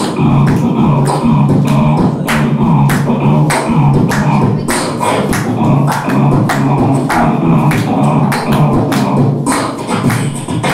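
Beatboxing into a cupped handheld microphone: a steady beat of sharp snare- and hi-hat-like mouth hits over a continuous low humming bass line.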